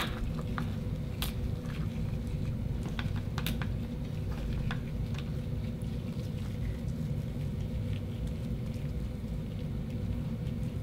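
Gloved fingers working a pearl out of an opened oyster on a wooden cutting board, with a few faint clicks and squishes in the first few seconds. A steady low hum runs underneath.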